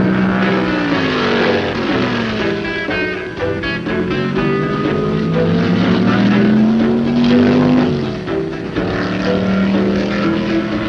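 Racing sports-car engines going by at speed. The engine pitch falls as one car passes about a second in, then climbs for several seconds and drops away near the eight-second mark as another car passes. Music plays underneath.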